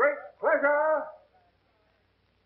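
Small dog barking: a short bark, then a longer drawn-out yelp about half a second long.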